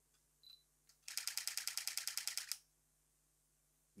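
Canon EOS M50 mirrorless camera giving a short high beep, then firing a high-speed continuous burst: its shutter clicks rapidly and evenly, about ten frames a second, for about a second and a half.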